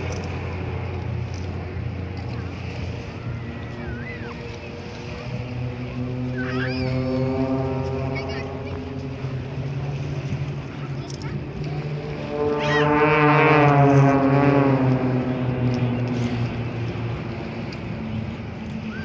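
Extra EA-300 aerobatic planes' piston engines and propellers droning as the formation flies past. The pitch of the drone falls with each pass, and the loudest pass swells up about twelve seconds in and fades over the next few seconds.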